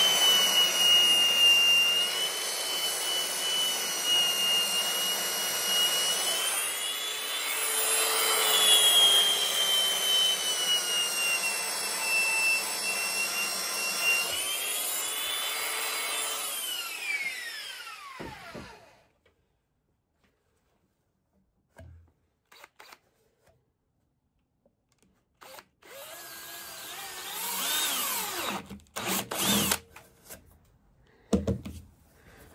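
Handheld electric belt sander running on a sheet of recycled plastic, its motor whine wavering in pitch as it is pressed against the work. About 16 s in it is switched off and winds down, its pitch falling until it stops.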